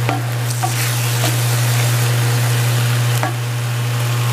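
Cubes of beef chuck sizzling as they sauté over high heat in an enamel-lined pan, stirred with a few clicks of the spoon against the pan, over a steady low hum.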